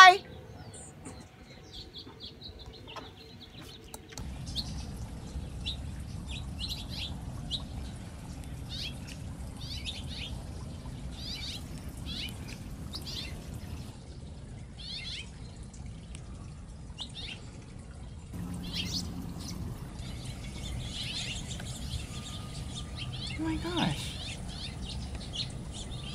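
Hummingbirds chirping in many short, high chips scattered throughout, over a steady low outdoor background and a small solar fountain trickling water. A brief sliding sound near the end is the loudest moment.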